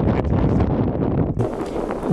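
Wind buffeting the microphone: a loud, rough low rumble that stops abruptly about one and a half seconds in.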